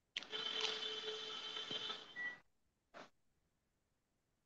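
Surgical power drill running steadily for about two seconds, drilling the hole for a proximal screw through a femoral plate, then a brief short burst near the end. Faint and heard through a video call.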